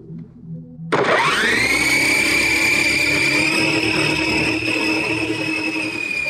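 Radio-controlled helicopter's motor spinning up about a second in: a loud whine that climbs quickly in pitch and then holds steady, heard close from the camera on board.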